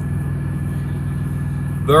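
Semi-truck's diesel engine idling steadily, a low even hum heard inside the cab.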